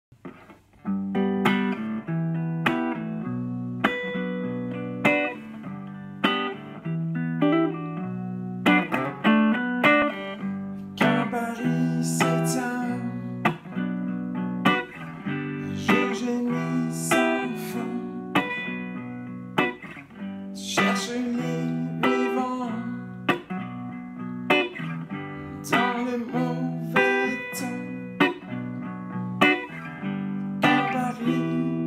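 Semi-hollow-body Epiphone electric guitar played with a clean tone: chords picked one after another, each struck and left to ring, in a steady, unhurried pattern.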